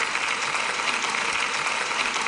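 Applause: many people clapping, steady and fairly loud.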